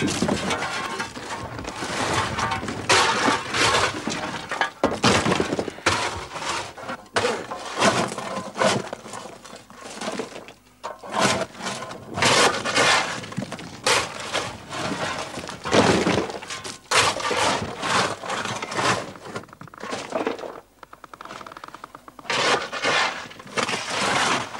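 Coal and rock cracking and crashing down in a pit roof fall: a long run of heavy breaking impacts, easing briefly about ten seconds in and again shortly before the end.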